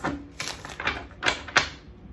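A tarot deck being shuffled by hand: about five short rattling strokes of the cards slapping together, roughly one every half second.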